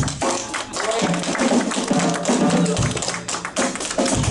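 Live jazz quartet of violin, piano, double bass and drum kit playing a blues, with scattered audience applause.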